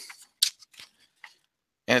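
Folded paper poster being unfolded by hand: a few brief, faint crinkles of paper.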